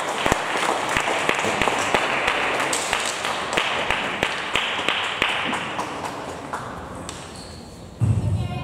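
Table tennis balls clicking irregularly off bats and tables in a large hall, over a background hall noise that grows quieter toward the end.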